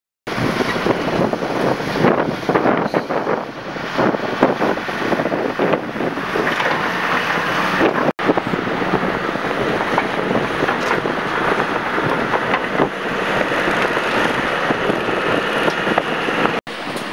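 A wheel loader's diesel engine running at a demolition site, with wind buffeting the microphone, in a steady noisy din; the sound breaks off briefly about halfway through and then carries on much the same.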